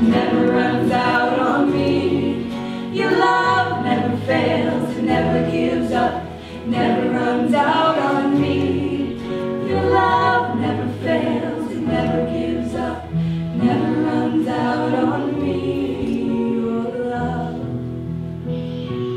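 A live worship band playing a song: singing over electric guitar, bass guitar and keyboard, with bass notes changing every second or two.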